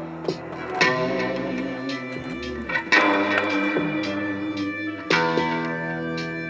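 Electric guitar played through a Fractal Audio Axe-Fx Ultra amp-modelling processor. Chords are struck about a second in, near three seconds and about five seconds in, and left ringing. A low bass note bends in pitch in the middle.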